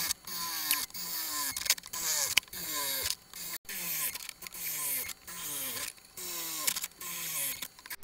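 Cordless drill boring plug-weld holes through a steel panel in a quick series of short bursts, each with a whine that falls in pitch.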